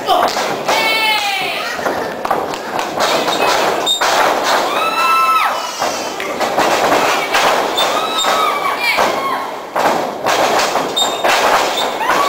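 Repeated thuds of wrestlers' bodies and feet hitting the wrestling ring's canvas, with voices shouting over them.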